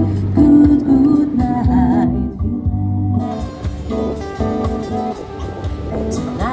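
Live acoustic music: acoustic guitars strummed and plucked over a steady low bass line, with a wavering sung or played melody line in places.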